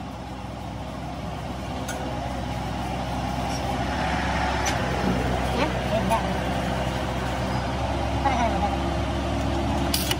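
Steady hum of an electric workshop machine motor running, slowly growing louder.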